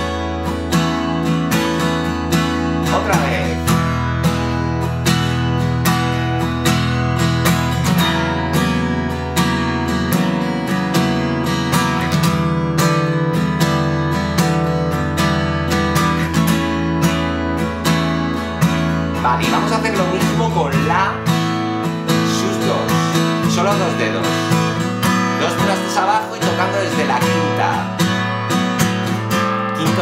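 Taylor steel-string acoustic guitar strummed: one fretted chord shape is moved to different frets while open strings ring against it, and the chord changes every few seconds.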